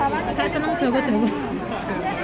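Voices of several people talking at once: chatter of a waiting crowd.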